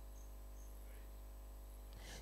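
Faint steady low electrical hum, with a few short faint high chirps.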